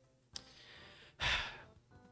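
A person sighing into a close microphone: a small mouth click, a faint breath in, then a short audible exhale about a second in that fades away.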